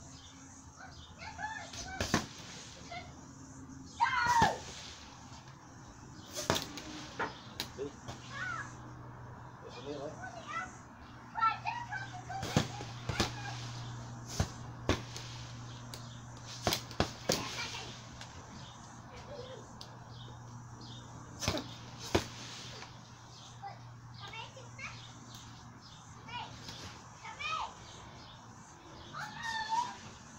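Punches landing on a hanging heavy bag: an irregular string of sharp hits, some in quick flurries of two or three. Short voice sounds and children's voices come and go behind them.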